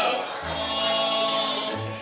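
A bluegrass band playing a waltz live: harmony vocals over acoustic guitar, banjo, mandolin and upright bass, with bass notes about half a second in and again near the end.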